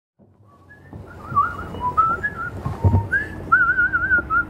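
A person whistling a wandering run of short notes, some held with a wavering trill, over a low background rumble, with a brief knock about three seconds in.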